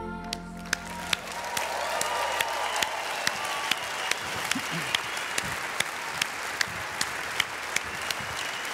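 The song's final chord fades out in the first second and a half, then an audience applauds. Louder claps stand out in a steady beat of about two a second, with some cheering near the start of the applause.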